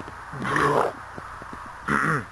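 A man's voice giving two short wordless growls, one about half a second in and a shorter, falling one near the end, with a few faint clicks between.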